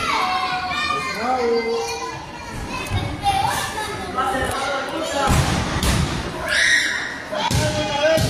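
Several heavy thuds of wrestlers' bodies hitting the wrestling ring's canvas mat in the second half, as a takedown ends in a pin. Spectators, children among them, shout throughout.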